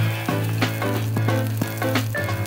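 Sliced bamboo shoots sizzling in a frying pan as they are stir-fried with chopsticks and their excess moisture cooks off, heard under background music with a steady beat.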